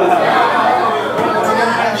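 Comedy-club audience reacting to a punchline: many voices at once, laughing and chattering, easing off slightly toward the end.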